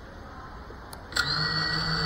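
FPV quadcopter's motors: a sharp click about a second in, then a steady, even whine as the motors spin at idle after arming, just before takeoff.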